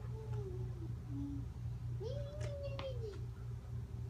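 A dog whining in high, gliding cries: a falling whine at the start and a longer whine about two seconds in that rises and then falls. A steady low hum runs underneath.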